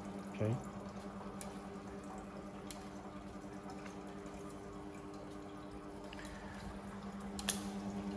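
Desktop filament extrusion line running: its electric motors give a steady hum with several overtones, with a few faint ticks now and then.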